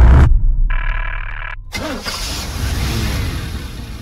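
Vehicle engine sounds: a loud low rumble that cuts off suddenly, a short steady tone, then an engine revving with rising and falling pitch that fades away.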